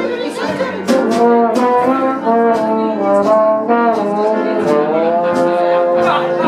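Jazz band playing live: trombone and alto saxophone lines over piano and electric guitar, with sharp percussive strikes keeping a steady beat.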